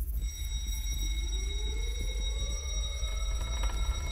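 Eerie ambient music-video soundtrack: a deep steady rumble under thin high held tones, with a tone that slowly rises from about a second in.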